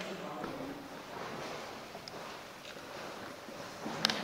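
Faint, indistinct voices of a tour group in a cave, with no clear words, over a steady background hiss; a sharp click near the end.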